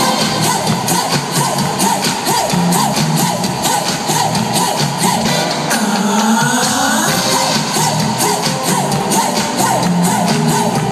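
Live pop music over an arena's sound system, heard from within the audience, with a steady driving beat. A swooping sweep comes about six seconds in.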